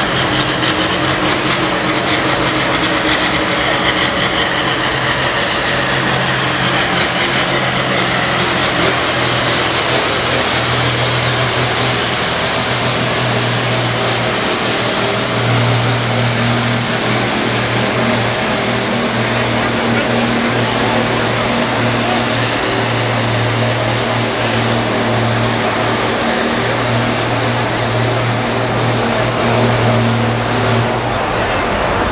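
Ford TW-15 tractor's diesel engine running hard under heavy load while pulling a 7,500 kg sled, a loud, steady drone that holds its pitch.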